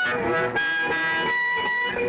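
Electric blues band playing live in an instrumental stretch between vocal lines, with a lead instrument holding long notes that bend in pitch.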